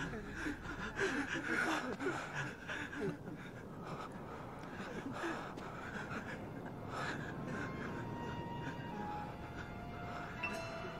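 Heavy, gasping breaths over a soft dramatic score; the breathing sounds are strongest in the first few seconds, and from about seven seconds in, thin sustained music tones come through.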